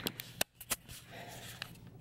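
Camera handling noise: several sharp clicks and taps with faint rustling as a handheld camera is moved and a hand pushes at a pillow.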